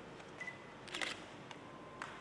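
A quick burst of sharp clicks about a second in, with a single fainter click after it and a brief high beep just before, over the quiet background of a hall.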